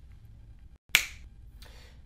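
A single sharp finger snap about a second in, with a short ring after it, against faint room tone that cuts out for an instant just before it.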